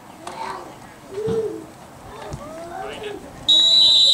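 Coach's whistle blown once near the end, a single steady high blast under a second long, blowing the play dead after a tackle at football practice. Voices call out across the field before it.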